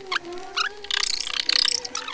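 Crackling and rustling of adhesive vinyl decal film being handled and pressed onto a plastic motorcycle fairing, with a few sharp clicks at the start and denser crackle in the second half. A faint steady wavering tone sounds underneath.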